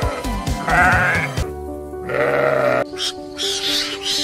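A sheep bleating twice, quavering calls about a second in and again just after two seconds, over background music with held notes.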